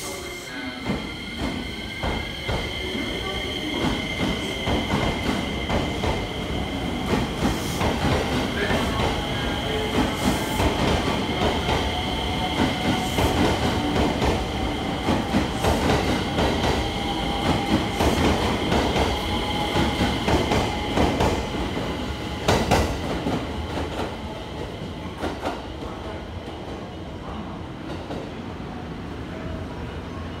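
JR West 225 series electric train accelerating away, its Hitachi IGBT inverter whining in rising tones over steady high notes, with wheels clacking over rail joints and points. The sound builds to its loudest after about 20 seconds, with one sharp bang, then eases as the train pulls away.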